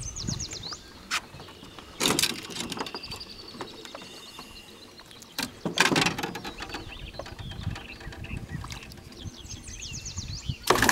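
A songbird singing quick trills of high chirps near the start and again near the end, with short loud noisy bursts about two and six seconds in as a hooked tiger musky thrashes at the side of a small boat.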